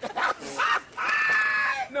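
A person's high-pitched, drawn-out vocal squeal held steady for about a second, after a few short vocal sounds.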